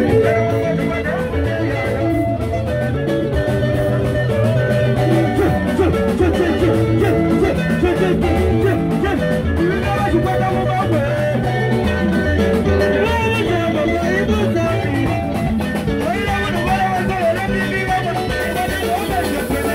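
Loud live band music played through a concert PA: guitar lines over a steady bass, with singing at times.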